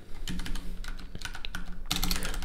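Computer keyboard typing: a quick run of many key clicks as keys are tapped in rapid succession.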